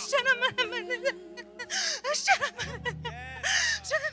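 Voices speaking in tongues: quick, unintelligible syllables with loud breathy gasps about two seconds in and again near the end. Soft sustained chords from the praise band hold underneath and shift lower partway through.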